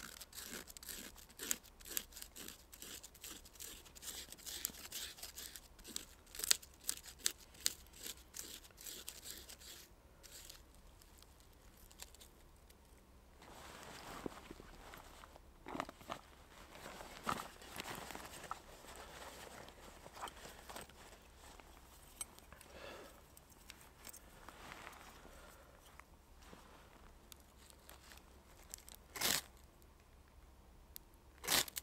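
A knife blade scraping birch bark into tinder shavings, in a rapid run of short rasping strokes for the first third. Quieter handling and rustling follow. Near the end comes a sharp scrape of a ferro rod striking sparks into the tinder.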